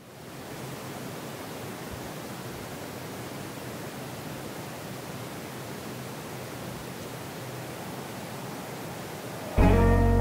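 A steady rushing noise, like wind or a noise bed, fades in quickly and holds evenly. Just before the end, guitar-led music comes in suddenly and much louder.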